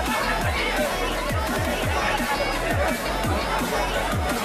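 Crowd chattering in a packed hall, under electronic music with a deep falling bass beat about three times a second.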